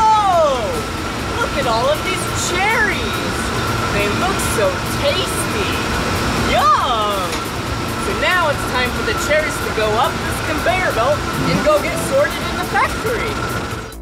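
Cherry conveyor machinery running with a steady hum and a thin, constant whine. Over it a man's voice makes repeated wordless exclamations that slide up and down in pitch.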